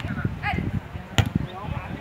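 Distant shouting voices on an outdoor soccer pitch, with one sharp smack a little over a second in.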